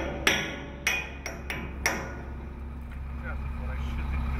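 Hammer striking the steel pin of a truss joint to drive it home: about five sharp metallic blows in the first two seconds, each ringing briefly, then the hammering stops.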